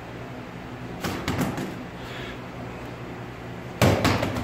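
Boxing gloves and focus mitts striking each other in sparring: a quick cluster of smacks about a second in and one louder smack near the end, with echo in a small room over a steady low hum.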